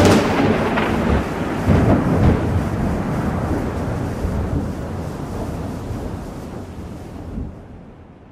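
Rumbling thunder with no music, a few heavier rolls in the first couple of seconds, then a steady fade toward silence.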